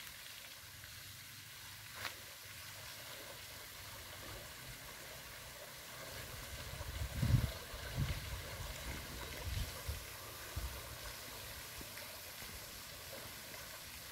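Faint steady hiss and splash of a floating pond fountain aerator spraying water. There is a single click about two seconds in and a few low rumbles in the middle.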